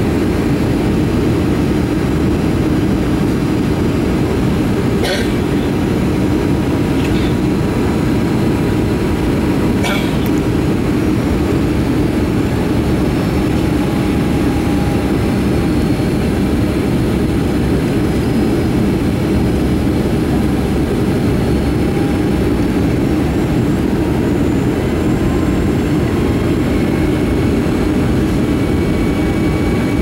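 Steady cabin noise inside a Boeing 757-300 on final approach: the turbofan engines and the rush of air over the fuselage, heard as an even, low rumble from a seat over the wing. A few faint clicks come about five, seven and ten seconds in.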